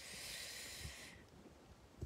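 A soft hiss for about a second, then a few faint low knocks.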